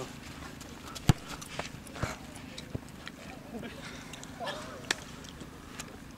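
A few sharp knocks over a low steady hum and faint distant voices; the loudest knock comes about a second in, with others near two seconds and near five seconds.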